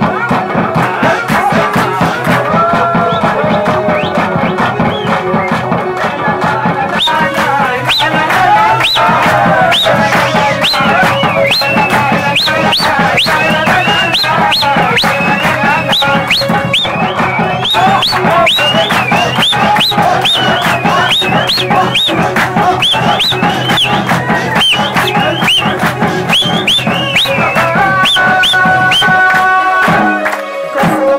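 Live Burushaski folk dance music: drums beat a fast, dense rhythm under a wavering melody, with a crowd clapping along. From about seven seconds in, a sharp, high rising figure repeats over and over on top, and near the end one note is held steady.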